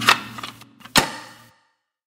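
Two sharp mechanical clicks about a second apart, over a faint steady hum that cuts off suddenly.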